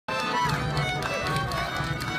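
Button accordion and fiddle playing a sea shanty tune together, with several held notes sounding at once.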